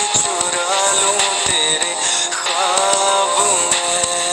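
A romantic Hindi-language song: a vocalist sings a slow melody with held, gliding notes over a musical backing.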